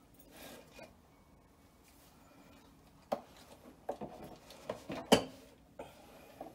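Handling noise as a white pad is pressed and smoothed over a dog's coat: a soft rustle early on, then a few short crinkles and rustles, the loudest about five seconds in.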